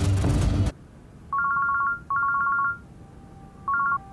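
A mobile phone rings with a warbling two-tone trill, in bursts of about half a second: two rings, then a third starting near the end. Music cuts off just before the first ring.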